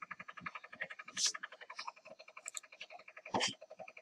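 A sharp click about three and a half seconds in, an Ethernet cable's RJ45 plug latching into a port of an HP ProCurve 1410 switch. It sounds over a fast, even pulsing in the background.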